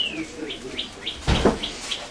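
A bird chirping: a falling whistle at the start, then a quick run of short high chirps. A dull knock about a second and a quarter in is the loudest sound.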